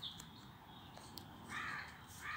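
A crow caws once, a short harsh call near the end, with a brief high bird chirp right at the start.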